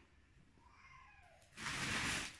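A fluffy blanket rustling loudly as it is handled and lifted near the end. Before that, a faint short call that falls in pitch about halfway through.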